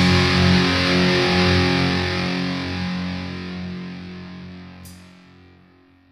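A distorted electric guitar chord held and ringing out as the final chord of a skate punk song, slowly fading away.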